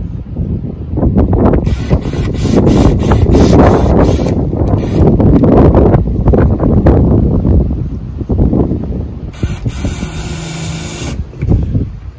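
Cordless drill boring through the sheet-metal body of a school bus, a loud rough grinding of bit on metal. Near the end the drill runs more steadily for a second or two.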